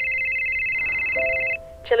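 Ring tone of an outgoing phone call just dialled: a steady high trilling tone that stops about a second and a half in, overlapped by a short lower tone, before a voice answers near the end.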